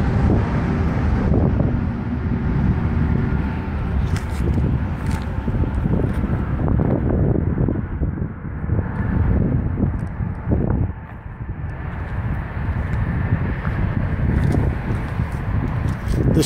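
Wind buffeting the microphone outdoors: a low, rumbling noise that rises and falls unevenly, with a few faint clicks from handling.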